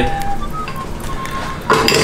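Light metal clinks of a foil-lined baking tray on the oven rack, over soft background music with held notes.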